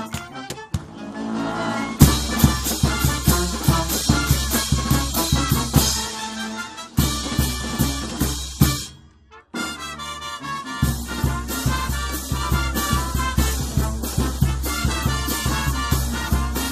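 A Peruvian banda filarmónica, a brass band of sousaphones, trumpets and trombones over a bass drum, playing live with a steady beat. It comes in at full strength about two seconds in, breaks off for a moment about nine seconds in, and picks up again.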